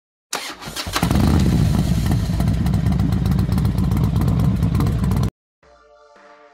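Motorcycle engine started: a short, uneven burst as it cranks and catches, then about four seconds of loud, steady running that cuts off suddenly.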